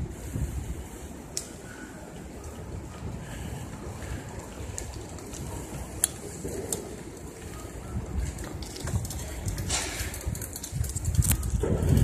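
Wind buffeting the microphone of a camera moving along on a bicycle: a steady low rumble that swells near the end, with a few faint clicks and rattles.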